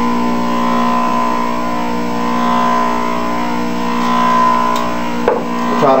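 A small electric motor running with a steady, unchanging pitched hum, with a click about five seconds in.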